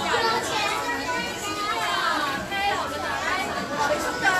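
Crowd chatter: many voices talking over one another at once, some of them high-pitched like children's.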